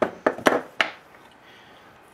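Metal hand tools, a ratchet and socket, are set down and shifted on a wooden workbench: four or five sharp knocks and clatters within the first second.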